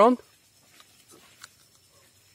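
The end of a spoken word, then near silence with a few faint, short ticks about a second in.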